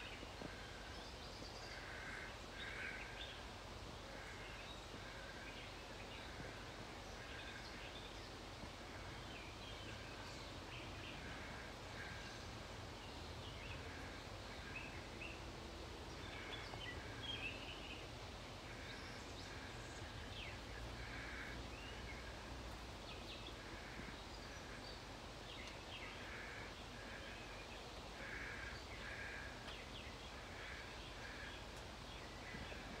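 Faint outdoor ambience with birds chirping: short high notes repeated irregularly over a steady low background noise.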